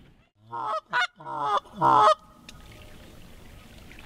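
Canada geese honking: four honks in quick succession in the first half, each louder than the last.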